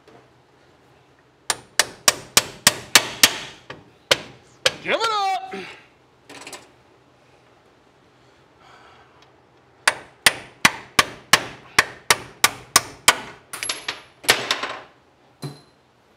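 Hammer blows on the front spindle and brake assembly of a 1957 Chevy 3100 being knocked apart: two runs of sharp, ringing strikes at about three a second, roughly eight in the first run and a dozen in the second. A short grunt falls between the runs.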